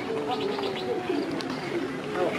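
Birds calling, with a quick run of high chirps about half a second in, over low cooing calls and voices.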